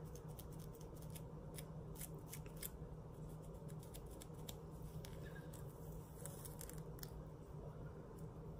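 A fine-tooth plastic comb scraping across a dry, dandruff-flaked scalp between braids, in a run of quick, faint scratches.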